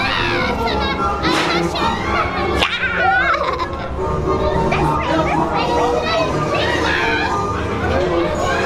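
High, wavering voices shrieking and laughing over steady background music, with a sharp crack about a third of the way in.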